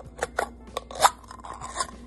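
Ring-pull lid of a small metal pet-food can being peeled open: a run of sharp clicks and crackles, the loudest about a second in. The can is empty.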